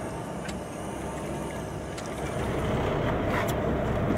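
Boat engine running steadily, with a few faint clicks over it.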